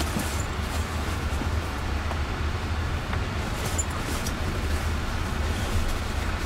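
Cabin noise inside a Jaguar I-Pace electric car on the move: a low, steady rumble of tyres and road with no engine note.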